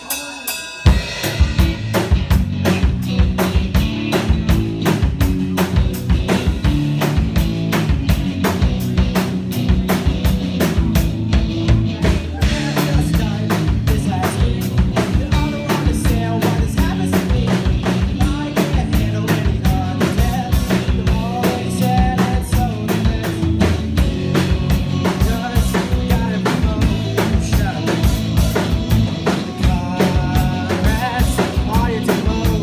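Live rock band of electric guitar, electric bass and drum kit kicking into a song about a second in and playing on with a steady, dense drum beat under bass and guitar.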